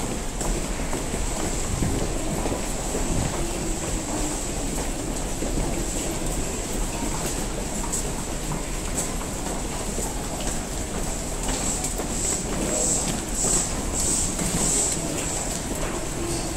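A Tokyu electric train braking to a stop at an underground platform, its motor tone falling as it slows, then standing with a steady hum.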